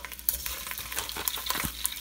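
Raw Italian sweet sausages sizzling in a thin coat of hot olive oil in a stainless steel pot as they are laid in, a steady hiss with many small crackles.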